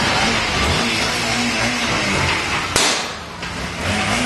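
Steady background noise with a faint voice, broken about three quarters of the way through by one sharp crack.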